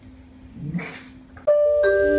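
A quiet room with a faint hum and a brief voice less than a second in, then an electronic intro jingle starting abruptly near the end: several sustained chiming notes that come in one after another.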